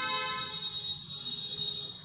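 Whiteboard marker squeaking against the board as a word is written: one steady, high-pitched squeal lasting about two seconds, with a brief dip about a second in.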